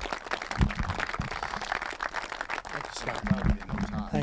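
Crowd applauding: many hands clapping in a dense, steady patter, with voices talking under it near the end.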